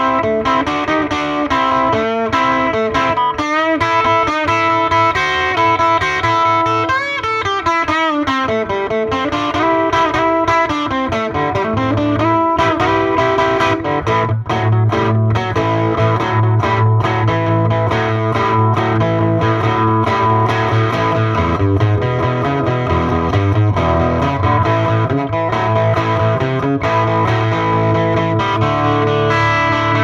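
Electric guitar played loud through a Grammatico LaGrange 15-watt hand-wired tube combo amp, miked at its speaker. Single-note lead lines with string bends and vibrato about 7 to 9 seconds in give way to fuller, lower riffing with a strong bass from about 14 seconds.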